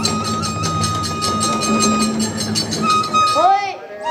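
Kagura hayashi ensemble playing: rapid, even strikes of drum and hand cymbals under a bamboo flute holding a long high note. Near the end the playing breaks into a sliding rise and fall in pitch, then dips briefly.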